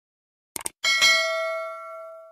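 A quick double mouse click, then a single bell ding that rings and slowly fades out. This is the stock sound effect of an animated subscribe-button and notification-bell overlay.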